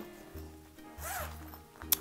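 Zipper on a clear vinyl pencil pouch being pulled open, a faint rasp, with a sharp click near the end.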